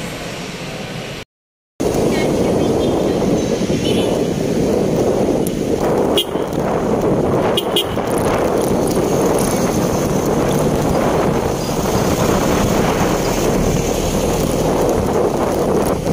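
Wind buffeting the microphone of a camera on a moving motorcycle, a loud steady rumble with the bike and street traffic underneath. It starts just under two seconds in, after a brief silent gap.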